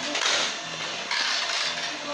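Plastic toy parking tower and die-cast toy cars rattling and clattering as they are handled, in two short bursts.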